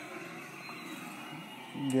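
Faint, steady street traffic noise from motorcycles and auto-rickshaws on a busy road, with no single passing vehicle standing out.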